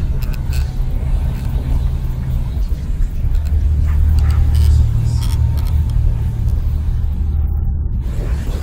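Experimental electronic music made with modular and physical-modeling synthesis: a deep, steady low drone that shifts in pitch a few seconds in, with scattered clicks and crackles above it. The high crackle drops out shortly before the end.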